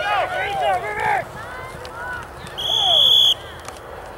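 Excited shouting from spectators during a running play, then a referee's whistle blown once, a loud steady shrill note lasting under a second, about two and a half seconds in, signalling the play dead after the tackle.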